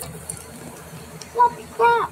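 A high voice making two short sing-song sounds, one at about a second and a half in and a slightly longer one just before the end, after a quieter stretch of room noise.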